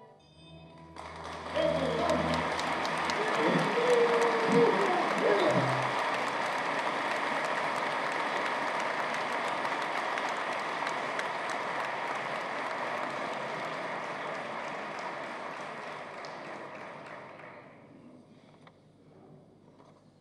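A seated audience applauding, the clapping building quickly about a second in and then slowly dying away over the last few seconds.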